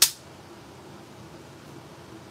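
A single sharp click right at the start, dying away within a fraction of a second, followed by quiet room tone with a faint steady hum.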